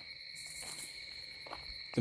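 Faint, steady high-pitched chirring of insects, with a brief soft hiss in the first second.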